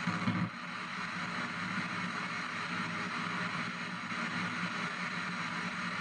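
P-SB7 spirit box sweeping down the FM band in reverse-sweep mode: a steady hiss of radio static chopped by the rapid station-to-station scan, with a short louder burst just after the start.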